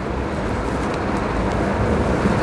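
Steady outdoor street noise: an even rushing sound over a low rumble, as of traffic passing along the street.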